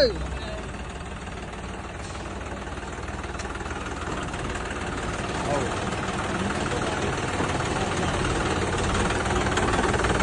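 Tractor diesel engine running steadily at low revs, growing gradually louder.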